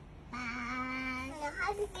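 A voice holding one long sung-out note for about a second, then breaking into a few short gliding syllables.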